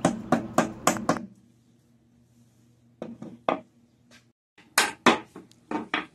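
Small hammer tapping wooden spindles into their holes in a wooden chair seat: a quick run of about five light taps, then, after a short pause, more taps in small groups.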